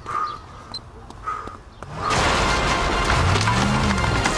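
Quiet at first, then about two seconds in a loud, sustained crash of splintering wood and flying debris as a vehicle smashes out through a house wall, with music under it.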